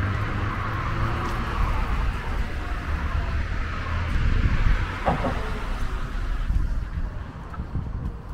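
Street traffic: a car's tyre and engine noise passing along the road and fading out near the end, over a steady low rumble of wind on the microphone.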